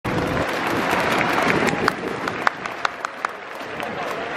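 A crowd of spectators applauding. The applause dies away after about two seconds, leaving a few scattered single claps.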